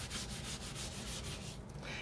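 A white wipe rubbing sprayed blue ink into a paper-collage journal cover, a soft steady scrubbing over paper that eases off about one and a half seconds in.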